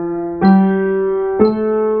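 Piano playing a C major scale slowly upward, one note struck about every second and ringing until the next. Two new notes sound, about half a second and a second and a half in, each a step higher than the last.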